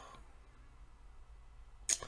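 Faint room tone, then a single short, sharp click near the end.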